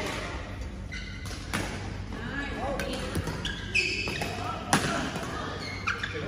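Badminton rackets hitting a shuttlecock during a doubles rally: a few sharp pops, the last three about a second apart near the end, with voices in the background.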